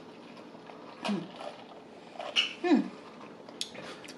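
A woman humming "mm" twice in appreciation as she tastes boba milk tea, each hum sliding down in pitch. There is a short click shortly before the end.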